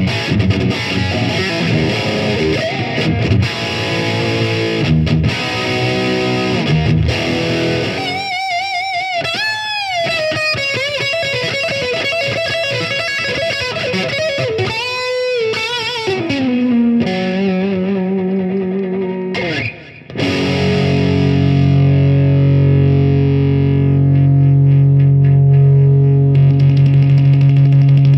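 Gibson Les Paul Studio 60's Tribute electric guitar with P90 pickups, played through distortion: chord riffs for the first several seconds, then a single-note lead with string bends, wide vibrato and downward slides. After a brief break, a chord is left ringing for the last several seconds.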